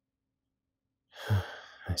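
About a second of silence, then a man's soft, breathy sigh leading straight into the spoken word "I".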